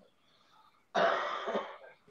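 A man coughs once to clear his throat, starting suddenly about a second in and fading over most of a second.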